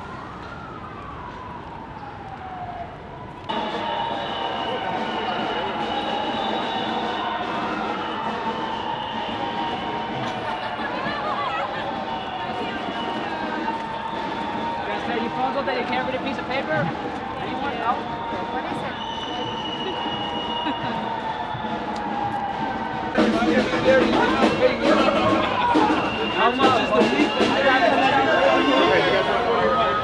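Street crowd noise from a march: many voices at once, with a siren wailing over the traffic. The sound jumps louder suddenly about three seconds in, and the crowd voices get louder and closer near the end.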